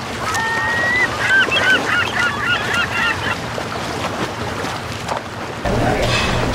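A quick series of short bird calls, with one longer held note early on, over a steady rush of noise; the calls stop about halfway through. Near the end a low steady hum cuts in abruptly.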